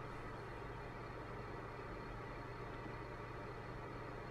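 Faint, steady room tone: a low hum with an even hiss and no distinct events.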